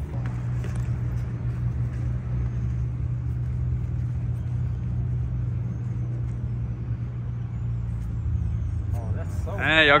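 A steady low engine hum that holds unchanged throughout, with a man's voice breaking in at the very end.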